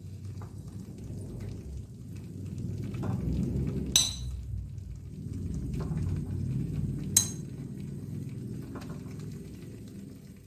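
Whole boiled eggs being set into thick masala in a frying pan, over a low steady rumble of the cooking. Twice, about four and seven seconds in, a metal spoon clinks sharply against the pan.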